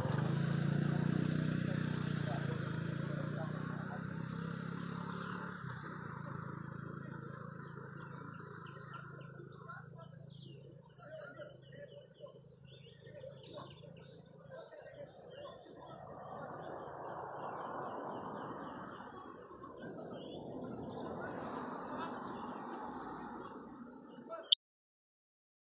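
A road vehicle's engine fading away over the first few seconds, then birds chirping repeatedly against faint outdoor background noise.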